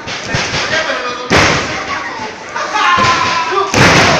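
Two heavy thuds of wrestlers' bodies landing on the wrestling ring, one about a second in and a louder one near the end.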